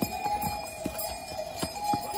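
Bells ringing steadily, with a few sharp clicks of steps on a stone path.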